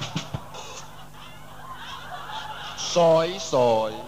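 A singer's voice calling 'soi, soi' about three seconds in: two short, loud syllables, the first bending down in pitch and the second rising. Before them is a quieter stretch with a couple of faint clicks at the start.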